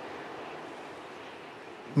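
Steady, soft rush of wind with no distinct events, fading slightly toward the end.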